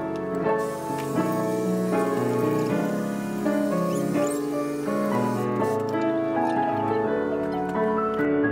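Background piano music, a steady flow of notes. Under it, for about the first five seconds, there is a faint hiss that fits a handheld stick vacuum running.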